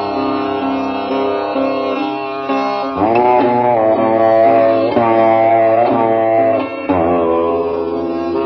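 Sitar playing a slow meditation melody. About three seconds in, the notes begin to slide up in pitch and settle back, again every couple of seconds.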